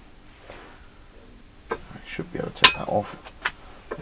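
Clicks, knocks and clinks of a hand-held brake bleed vacuum pump and its hose fittings being handled on a glass jar as the hose is pulled off the lid. The sounds start a little under two seconds in, with one sharp click about two and a half seconds in.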